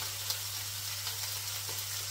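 Tofu and shrimp frying in oil in a hot frying pan: a steady sizzle with a few faint crackles.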